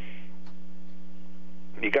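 Steady electrical mains hum, a constant low drone with no other sound over it, until a voice starts speaking near the end.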